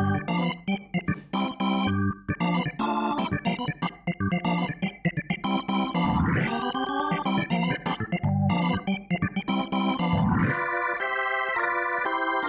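Arturia AstroLab stage keyboard played live with an organ-like sound: a run of short, choppy chords, with a pitch glide swooping up and down about six seconds in. Another glide comes near the end, going into a long held chord.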